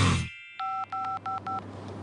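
Four short telephone keypad tones in quick succession, each the same two-tone beep, as a number is dialled on a phone. Music fades out just before them.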